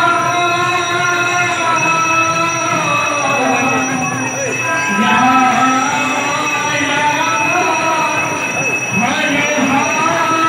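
Live Odia kirtan: a male singer holds long, wavering, gliding notes into a microphone through loudspeakers, with barrel drums (mridanga) playing underneath.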